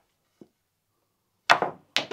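Cue and snooker balls knocking on a small tabletop snooker table. A faint click comes first, then two sharp clacks about a second and a half in, a shot in a break that fails to pot.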